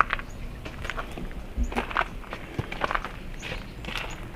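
Footsteps on a gritty concrete and gravel path, an irregular series of short crunching steps.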